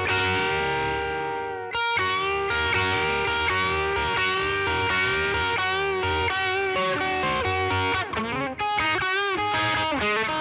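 Stratocaster-style electric guitar, tuned down a half step, playing a blues lead in E major. A held note rings for nearly two seconds, then a run of picked notes and double stops follows, with string bends and vibrato near the end.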